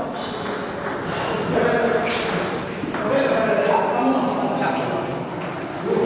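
Table tennis ball clicking off rubber paddles and the table during a rally, in a series of sharp pings, with voices murmuring in the background of a large, echoing hall.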